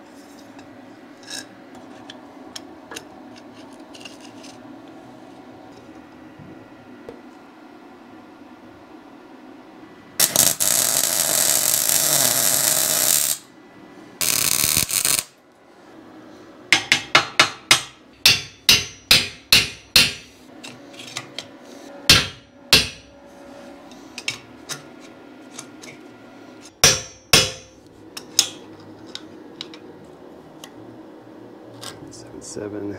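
Ball-peen hammer striking steel tilt-cylinder mounting brackets on a Caterpillar D4 dozer blade to knock them into line: a quick run of about ten sharp metallic strikes, then a few single blows. Before the hammering there is a loud rushing noise of about three seconds, then a shorter one.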